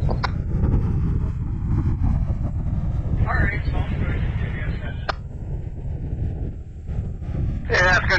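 Strong wind buffeting the microphone, a steady low rumble. Two sharp clicks cut through it, about half a second in and about five seconds in, and a brief faint voice comes through around three seconds in.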